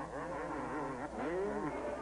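250cc two-stroke motocross bikes racing, their engine pitch swinging up and down several times as the riders get on and off the throttle through the corners.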